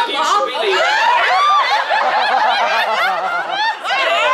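Voices talking and laughing, with chuckles and snickers mixed into animated speech.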